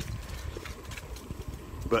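Low rumble of wind and riding noise on a handheld phone's microphone while cycling along a trail, with scattered faint clicks. A voice begins right at the end.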